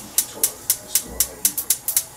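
Opening of a hip-hop track: sharp percussion hits at a steady beat, about four a second, with faint voices under them and no rapping yet.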